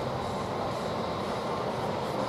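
Steady rushing noise of ocean surf and wind, even throughout with no distinct events.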